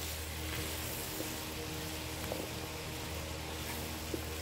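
Curried potatoes and chickpeas sizzling steadily in a hot pot as they are stirred with a silicone spatula, over a steady low hum.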